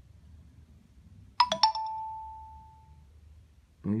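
Electronic notification chime: a quick run of bright notes about a second and a half in, then one held tone fading away over about a second and a half.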